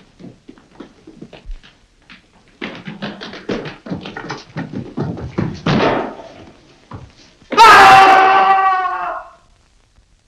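A scuffle of footsteps and knocks on stone, then, about seven and a half seconds in, a man's loud scream, held for nearly two seconds and falling slightly in pitch, as he falls from a height to his death.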